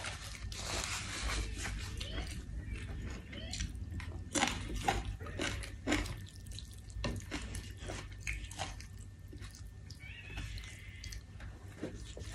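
Close-up eating sounds from a person chewing: irregular wet smacks and clicks of the mouth, loudest around four to six seconds in.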